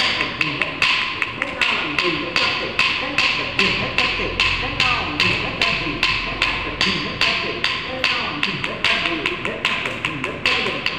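Steady rhythmic wooden tapping, about four sharp taps a second, with a voice chanting along, keeping time for a Kuchipudi dance.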